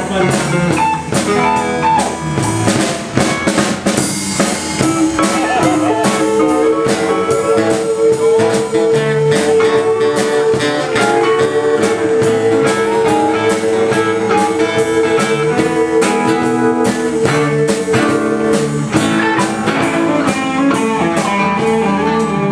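Live blues band playing an instrumental passage on electric and acoustic guitars with a drum kit keeping a steady beat. One long held note sounds from about six seconds in until shortly before the end.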